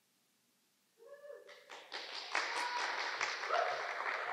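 A small group of people cheering and whooping, with clapping, starting about a second in and going on steadily.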